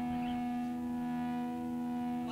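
An electric guitar chord left ringing through the amplifier after the band stops playing, held steady as one sustained, distorted chord.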